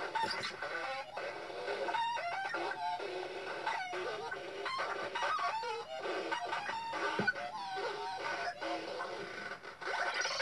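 Circuit-bent Playskool electronic toy playing its sounds through its small speaker. The sounds are pitch-bent and chopped into short stuttering fragments by the added 40106 looping oscillators and a 4017 decade-counter sequencer, all switched on at once. The fragments warble up and down in pitch and break off about every half second, with no deep bass.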